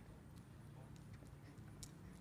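Near silence: faint footsteps of a person and a mastiff walking on asphalt, heard as light, scattered clicks over a low steady hum.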